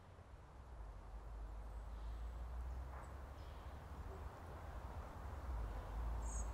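Faint ambient background: a steady low rumble with a soft hiss that grows slowly louder, and a few faint high chirps.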